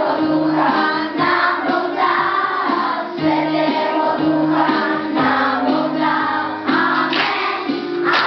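A group of young children singing together in unison, a lively song sung loudly and steadily.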